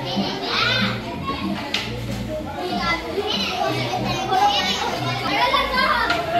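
Many children's voices, high-pitched chatter and calls, over background music with a low beat about once a second.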